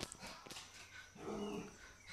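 A dog whimpering faintly: one short whine a little past the middle, after a sharp click at the very start.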